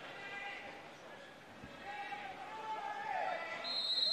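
Faint open-stadium ambience with players' distant shouts. Near the end a single steady referee's whistle blows for about a second, signalling that the free kick can be taken.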